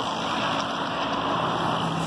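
Steady noise of road traffic, with a low engine hum coming in about one and a half seconds in.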